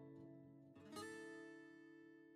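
Quiet background music: a chord rings and fades, and a new chord is struck about a second in and left to ring out.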